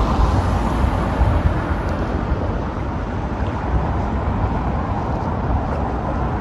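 Steady outdoor city-street ambience: a low, even rumble of road traffic with a noisy hiss over it, and no distinct single event.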